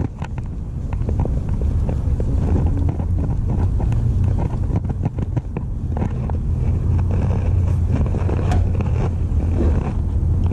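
Spinning reel being reeled in by hand, with irregular clicks and rustles from the reel and line, over a steady low rumble.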